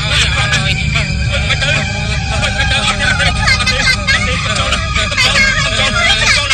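Several voices shouting and screaming in fright over a steady low rumble.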